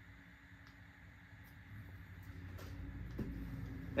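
Quiet room noise: a low rumble that grows louder over the second half, with a few faint clicks and a faint hum coming in near the end.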